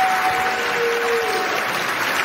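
Audience applauding in a large hall, a steady patter of clapping. Two long held notes sound over the applause and fade out about halfway through.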